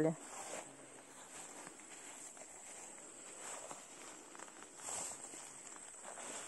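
Quiet footsteps swishing through tall grass and ferns, with a steady high-pitched chirring of grasshoppers in the background and a slightly louder rustle about five seconds in.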